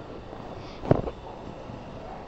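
Steady background noise, with a single short knock about a second in.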